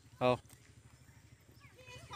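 A goat bleating once, a short single call about a quarter second in, over a faint low hum.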